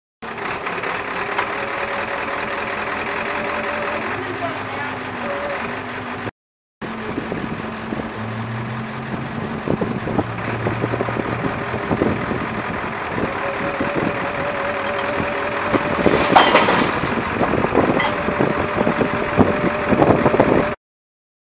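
A flatbed tow truck's engine running steadily with a low hum, street traffic passing, and a few metallic clanks near the end.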